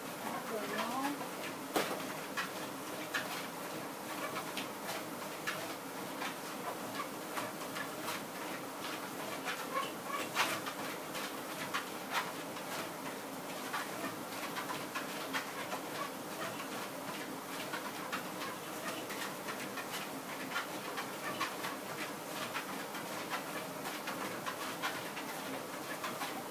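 Motorized treadmill running at walking pace, its motor and belt giving a steady hum, with scattered footfalls of a person and a large Labrador walking on the belt together. The dog pants.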